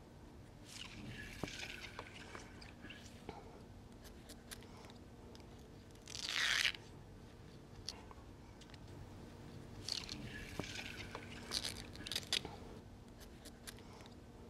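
Glue-backed cotton fabric being peeled off an adhesive cutting mat: two stretches of crackling peel, about a second in and again near ten seconds, with one louder short burst about halfway through.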